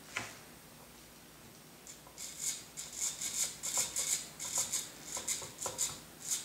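Small helicopter servos buzzing and clicking in quick short bursts, several a second, over the last four seconds. This is the tail servo on a T-Rex 250 driven by the 3GX MRS flybarless gyro, moving the tail pitch slider to counteract the helicopter being turned by hand. A single click comes just after the start.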